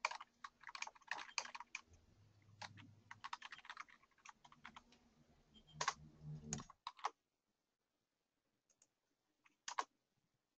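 Faint typing on a computer keyboard: irregular keystrokes for about seven seconds, then it stops, with a pair of clicks near the end.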